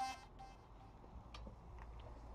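Background music cuts off right at the start, leaving a faint low hum with two faint ticks in the second half.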